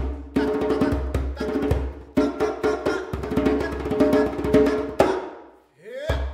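Djembe played with bare hands in quick strokes and rolls, in phrases that each start with a loud hit and die away. The player chants held notes over the drumming, with a rising vocal glide near the end.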